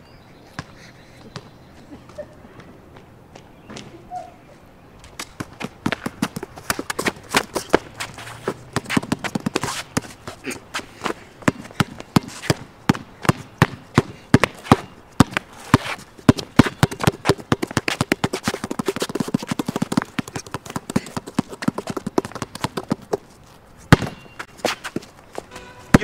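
A basketball player moving on a paved court: a fast, irregular series of knocks and slaps starts about five seconds in, goes on until near the end, and closes with one sharp hit.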